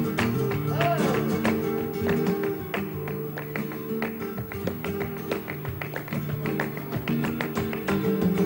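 Flamenco acoustic guitar playing in tangos rhythm, with a dense run of sharp hand claps (palmas) over it.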